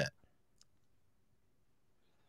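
A man's voice cuts off at the start, then near silence with a single faint click about half a second in.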